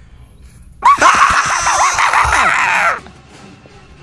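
A loud jump-scare scream, several shrieking voices layered together, that starts about a second in and cuts off suddenly two seconds later.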